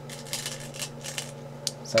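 Go stones clicking and rattling against each other in a wooden stone bowl as a hand picks through them: a handful of short clicks in quick runs over the first second and a half.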